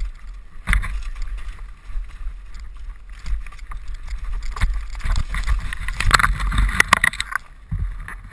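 Mountain bike rattling and clattering as it is ridden fast down a rough dirt trail, with sharp knocks from the jolts. A louder, dense burst of clattering about five seconds in stops abruptly near the end, as the bike crashes off the trail into the brush.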